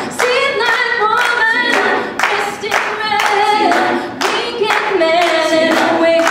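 Live a cappella group singing: a female lead voice over several-voice backing harmony, with the singers clapping their hands in a steady rhythm of about two claps a second.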